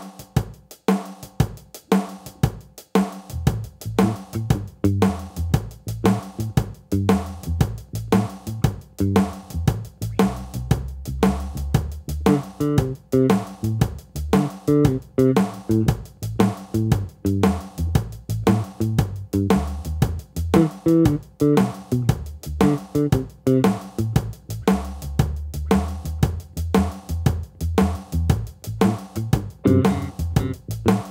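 The built-in drum rhythm of a Boss Dual Cube Bass LX amp playing a steady kick, snare and hi-hat beat. An electric bass played through the amp joins about three seconds in.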